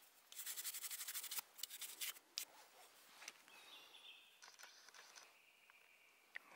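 Faint handling noise of a dotted work glove and a brass belt buckle over dry pine needles: a quick run of small crackles and clicks in the first second and a half, then a few scattered ticks and a faint high tone in the middle.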